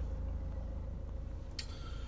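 A Vauxhall Astra's 1.6-litre diesel engine idling while the car stands still, a steady low rumble heard inside the cabin. A soft rustling hiss starts near the end.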